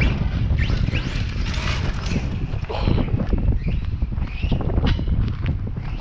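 Wind buffeting the microphone, a continuous uneven low rumble.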